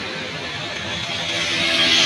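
Road traffic passing: tyre noise and an engine hum that swell as a motor vehicle comes close by, loudest near the end.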